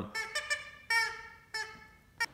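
A squeaky dog toy squeaking three times in quick succession, high-pitched, the middle squeak the longest.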